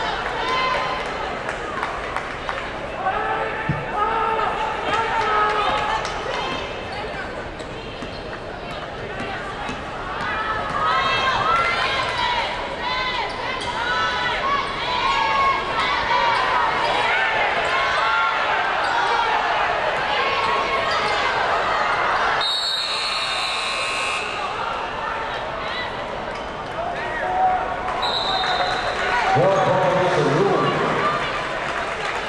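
Basketball game sounds: sneakers squeaking on the hardwood court and the ball bouncing, with voices throughout. About 22 seconds in a buzzer sounds for a second or so, and near the end a short, high whistle blows.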